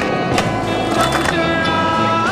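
Skateboard on concrete: several sharp clacks of the board popping and landing during a trick, in the first second and a half, over a music track.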